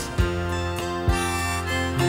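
Harmonica playing held notes in a short fill between sung lines of a slow live rock ballad, over the band's accompaniment.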